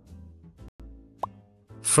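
Soft background music with a single short rising pop about a second in, the transition sound that marks the change to the next comment.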